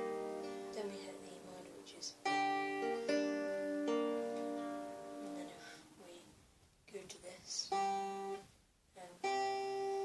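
A cutaway acoustic guitar fingerpicked slowly, with single notes plucked one after another and left ringing. It runs as a few short phrases with brief pauses between them, about six and nine seconds in. The pattern picks out an E minor chord.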